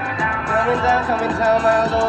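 Live band music with a voice singing a bending, wavering melody over it.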